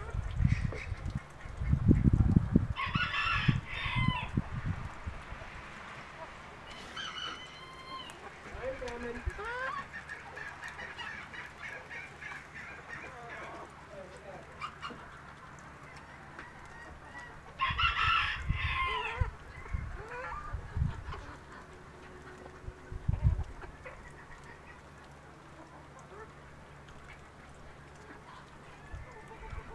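Backyard chickens: a rooster crows twice, once about three seconds in and again about eighteen seconds in, with softer clucks and calls from the flock between the crows. Low thumps sound on the microphone near the start.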